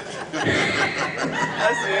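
A person's high, wavering vocal hollering without words, starting about half a second in.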